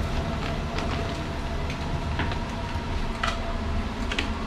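Steady low rumble and hum of a passenger train standing at a station platform, with a few light clicks and knocks through it.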